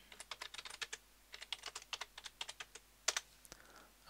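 Faint computer-keyboard typing: quick runs of keystroke clicks, with one sharper click a little after three seconds in.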